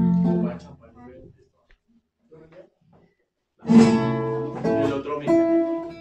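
Mariachi guitars strumming: a chord rings out and fades over the first second or so, then after about two seconds of near silence the strumming starts again with held notes.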